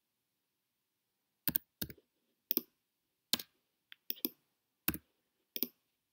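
Computer keyboard keys and mouse button clicking as values are typed into form fields, about nine sharp single clicks at uneven gaps of a half second to a second.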